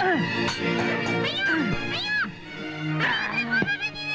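Comic film background music: quick up-and-down pitch swoops, repeated several times, over held low notes.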